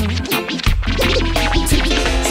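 DJ scratching a record over reggae music with a heavy bass line, short pitch glides cutting through the track.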